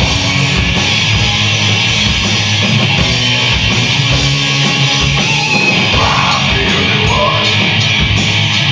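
Live rock band playing loud: electric guitar, bass guitar and a drum kit with cymbal crashes.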